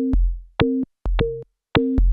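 Elektron Analog Rytm drum machine playing a sparse techno pattern: short pitched stabs about every half second, each with a deep kick-like bass beneath, cut off sharply with silence between.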